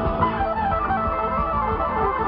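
Live bluegrass string band playing an instrumental passage: quick runs of picked notes over a steady bass pulse, heard through a phone or camera microphone from within the crowd.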